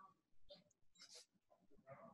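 Near silence, with a few faint, brief sounds scattered through the pause.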